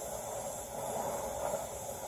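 Oxyacetylene cutting torch flame hissing steadily as it heats a steel bar so that it can be bent.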